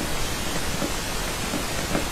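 Steady, even hiss of background noise with no distinct sound events.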